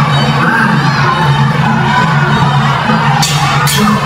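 Live ringside fight music playing, with a crowd shouting and cheering over it. Two brief, sharp bursts of noise come near the end.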